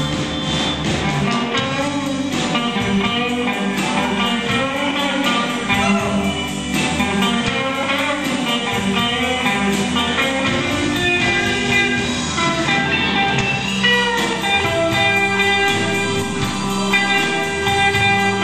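Live blues band playing a slow blues instrumental passage: an electric guitar leads over bass guitar, drums and keyboards.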